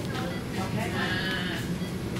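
A woman whimpering, a short wavering cry about a second in, over low background voices.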